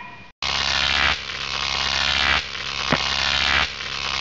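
Loud electrical buzz: a steady low hum under a dense hiss, starting about half a second in and shifting in level in steps every second or so, with one sharp click about three seconds in.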